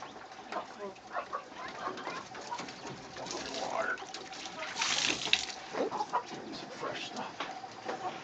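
Silkie chickens making soft, scattered clucking calls, with a short burst of noise about five seconds in.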